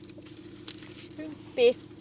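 A steady low hum inside a parked car's cabin, with faint crinkles of paper food wrappers handled during eating, and a short 'mm' from one of the eaters about a second and a half in.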